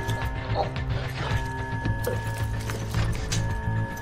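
Tense drama soundtrack: a low pulsing throb under two long held high tones, with scattered small clicks over it.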